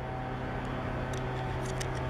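Steady low hum of background machinery, with a few faint ticks.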